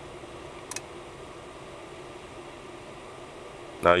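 Steady low hiss of room noise, with one faint short click about three quarters of a second in.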